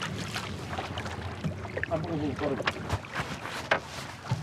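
On board a small wooden pirogue at sea: a low steady hum under wind and water noise, with a few sharp knocks on the hull near the end and brief voices in the background.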